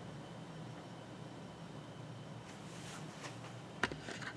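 Quiet steady low hum with faint scraping, then a sharp click near the end as a hand handles the top of a MakerBot Replicator+ 3D printer.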